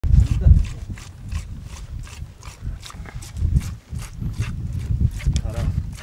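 A goat being milked by hand into a plastic bucket: sharp squirts of milk about two to three times a second, over a low, uneven rumble.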